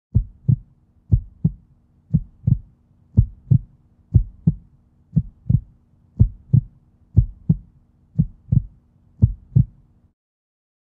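A heartbeat-like sound: pairs of low thumps, lub-dub, about once a second, ten beats in all, over a faint steady hum.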